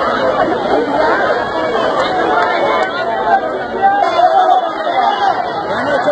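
A crowd of people talking loudly over one another, many overlapping voices with no one speaker standing out.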